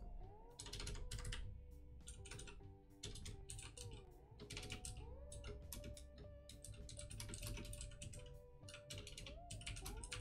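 Typing on a computer keyboard: irregular runs of keystrokes as a line of text is typed. Faint background music with sustained, gliding tones runs underneath.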